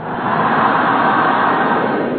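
A group of voices calling out together in one long, loud, drawn-out cry that blends into a rushing sound.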